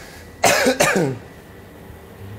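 A man coughing, two harsh coughs about half a second in, set off by the sharp fumes of dried chillies toasting in a hot wok.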